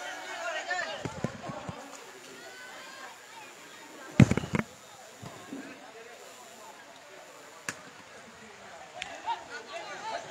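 Faint chatter of spectators' voices, with one loud, deep thump about four seconds in and a couple of sharp clicks later.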